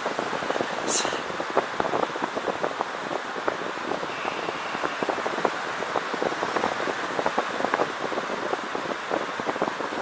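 Airflow rushing over a paraglider's harness-mounted camera in flight: a steady rush with constant fine crackling from wind on the microphone and the harness fabric, and a short sharp tick about a second in.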